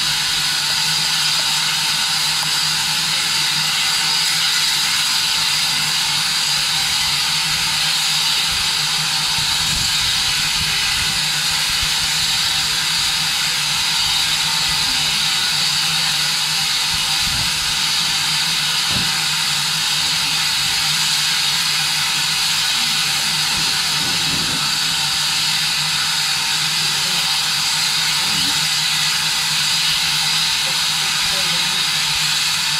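Small steam tank locomotive hissing steam steadily, an even high hiss with a low steady hum beneath it and no exhaust beats.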